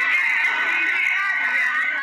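Many people shrieking and laughing at once, high-pitched voices overlapping without a break.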